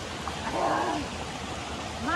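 Steady splashing rush of water pouring from inlet spouts into a concrete fish-farm raceway. About half a second in, a short wavering voice sound.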